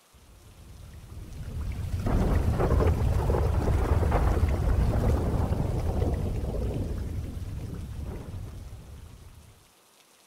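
A long roll of thunder with rain: a deep rumble that swells in over the first two seconds, holds, then fades away near the end.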